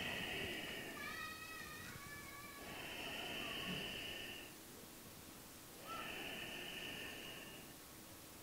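A person breathing audibly while holding downward-facing dog in long, even breaths about every three seconds, with a brief wavering whistle-like tone about a second in.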